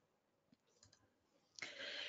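Near silence with a few faint clicks, then a short, faint breathy hiss near the end.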